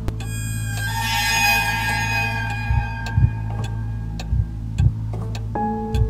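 Dark trailer music: a held chord opened by a bright, shimmering strike, over steady clock ticking about twice a second. From about halfway, pairs of low thuds join in and repeat.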